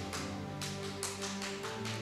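Soft background music: sustained chords with a light, quick tapping beat.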